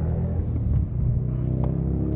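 A steady low rumble and hum, like an engine running nearby. Under it, water sloshes faintly as a plastic gold pan is dipped and tilted in a tub of water.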